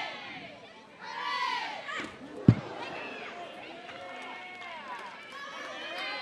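Ballpark crowd chatter and calls, with one sharp smack about two and a half seconds in: a fast-pitch softball striking the batter.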